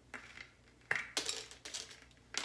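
A series of small sharp clicks and clinks as the cap is worked and pulled out of the neck of a large Christmas ball ornament.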